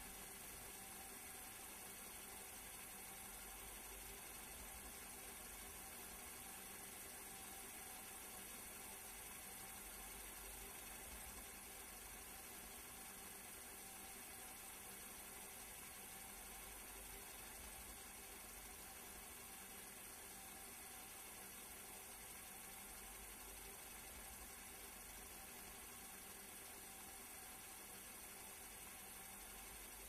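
Near silence: a faint, steady hiss with a low hum, unchanging and with no distinct sounds.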